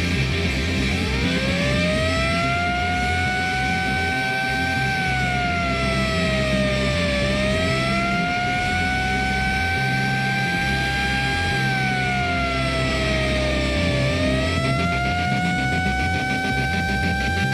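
A siren wail played through the concert PA, rising in about a second in and then sweeping slowly up and down in pitch, over a steady low rumble from the stage. Near the end a fast, regular chugging begins under the siren.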